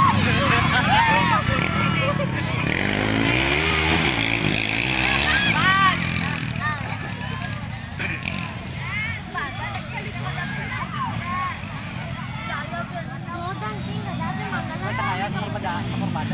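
Racing motorcycle engines revving, their pitch climbing and dropping over the first few seconds and then fading into the distance, under the shouts and chatter of spectators.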